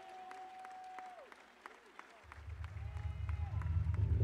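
A lull in the music: a held note fades out about a second in, over faint voices and scattered claps from the congregation. A low bass swell starts about halfway and builds steadily louder toward the end.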